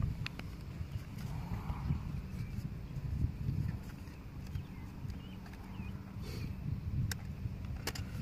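A few light plastic clicks as an RC boat's parts and its pistol-grip transmitter are handled, over a steady low outdoor rumble.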